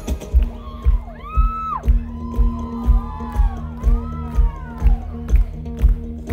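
Live band music: a kick-drum beat about twice a second under a steady low held note, with high wailing tones that slide up and down over it through the middle.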